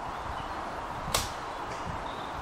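Compound bow shot about a second in: one sharp snap of the released string, dying away quickly.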